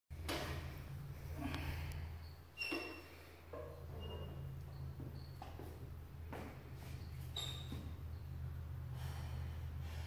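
A lifter's short, forceful breaths and shuffling steps as she walks a loaded barbell out of the squat stands and braces, with a couple of brief metallic clinks from the bar and plates, over a steady low hum.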